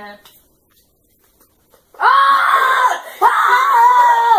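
A girl's high-pitched shrieks: two long, loud cries starting about two seconds in, the second falling in pitch at its end.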